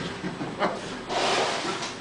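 A short rustle of noise lasting just under a second, about a second in, with a faint knock shortly before it.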